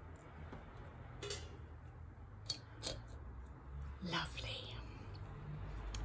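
Faint handling of a wax melt and its plastic packet: a few sharp clicks and crackles, about a second apart, as the melt is pushed out. A short breathy murmur comes near the end.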